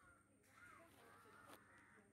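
Very faint bird calls, a few short arching notes, with a couple of faint clicks, over near silence.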